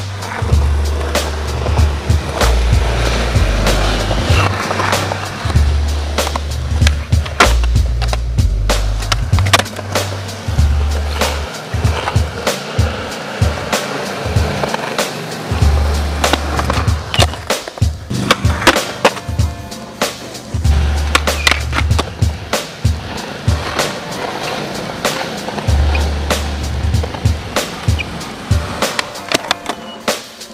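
Skateboard wheels rolling on concrete with many sharp pops, clacks and landings from tricks and ledge grinds, under background music with a heavy bass line that drops out for a few seconds twice midway.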